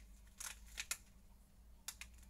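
A small white packet handled and opened by hand, giving four short crinkling clicks over two seconds.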